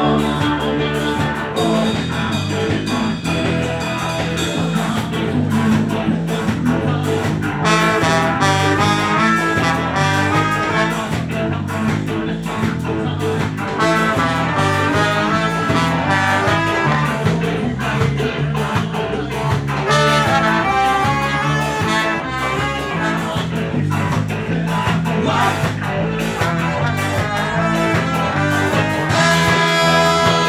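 Live ska band playing in a small room: trombone and tenor saxophone, electric guitar and drums over a steady repeating bass line, with the horn melody coming and going.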